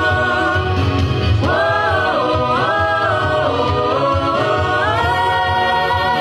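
A group of men and women singing together. They hold a note, then about a second and a half in sing a phrase that rises and falls, and near the end climb to a higher held note.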